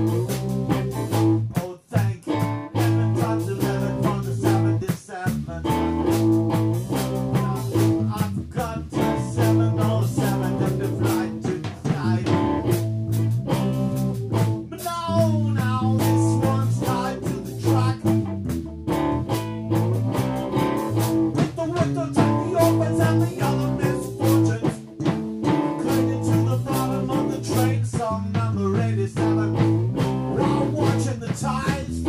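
Small live band playing a song: electric guitar, bass guitar, drum kit and keyboard, with a man singing into the microphone.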